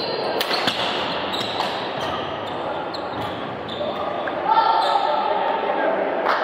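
Badminton rally in a reverberant indoor hall: racquets crack sharply against the shuttlecock, with other short knocks and a background murmur of voices. About four and a half seconds in comes a drawn-out high-pitched sound lasting about a second, the loudest moment.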